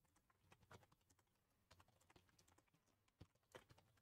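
Faint computer keyboard typing: irregular, soft key clicks.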